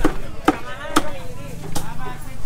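Cleaver chopping, sharp strokes at about two a second, with voices around it.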